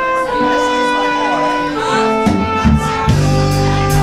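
Live band playing a slow, bittersweet gospel-tinged intro. A horn section holds long chords that change pitch twice, and bass and drums come in a little over two seconds in.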